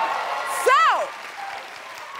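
Studio audience applauding and cheering, fading down after about half a second, with one high-pitched voice calling out once, rising then falling in pitch, a little under a second in.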